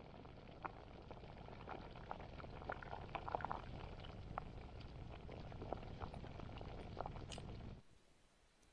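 Pot of mushroom and meat soup boiling over a campfire: a faint steady bubbling with scattered small pops. It cuts off suddenly near the end.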